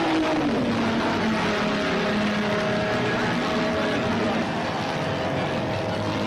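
Formula 2 racing car engine running at speed. Its note falls in pitch in the first second, then holds steady over a continuous rushing noise.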